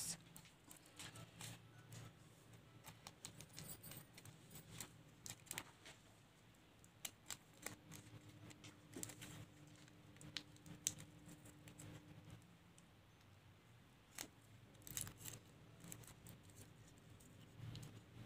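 Faint, irregular snips of small scissors cutting around a paper sticker covered in clear tape.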